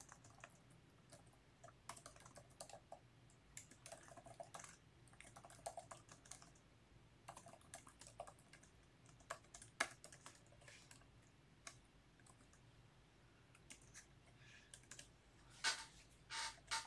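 Faint typing on a computer keyboard: scattered, irregular key clicks.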